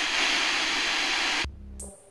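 TV static sound effect: a loud, even hiss of white noise, edited in to mimic a broken screen. About one and a half seconds in it drops to a brief low hum, then cuts off.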